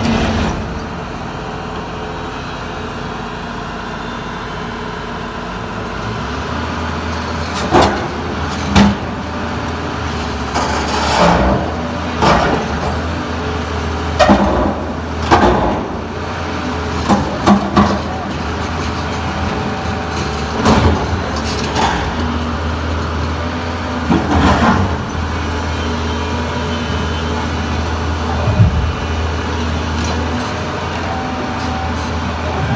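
Doosan hydraulic crawler excavators' diesel engines running steadily, the low engine note rising about six seconds in as one bucket levers a granite slab upward. Short loud voices and sharp knocks come at intervals over it.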